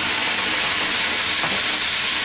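Fried onions and spices in hot oil in a pan sizzling hard and steadily as a little water is poured in from a bowl.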